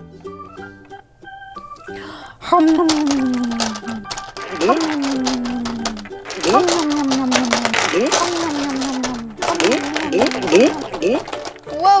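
Gumballs clattering and rattling against one another and the bowl as a plush toy is pushed down into them, with many sharp clicks, thickest from about six to nine seconds in. Background music plays throughout, with a run of tones sliding down in pitch.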